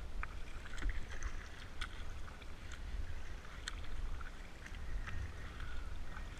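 Kayak paddle strokes: water splashing and dripping off the paddle blades in scattered small splashes and drips, with a steady low rumble of wind on the microphone.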